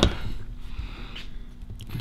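Low room noise with faint handling sounds as small plastic drone parts and a camera mount are moved about by hand.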